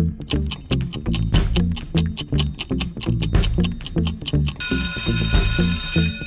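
Quiz countdown-timer sound effect: fast clock ticking, about five ticks a second, over a low electronic beat. About four and a half seconds in, a held ringing alarm tone starts, signalling that time is up.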